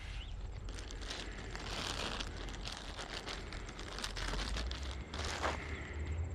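Dog treats being handled and broken up by hand, a run of quick crinkles and crackles over a low rumble, with a brief falling squeak about five seconds in.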